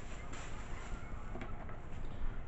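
Handling noise as items are picked up and moved: a short rustle or bump at the start and another about a second and a half in, over a steady background hiss.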